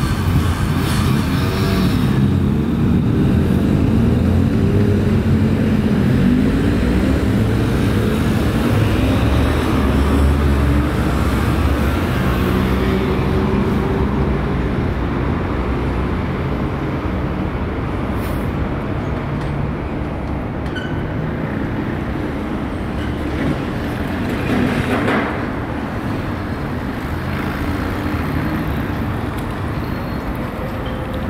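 Urban traffic rumble from passing vehicles, with engine tones gliding up and down during the first half and easing off a little later on.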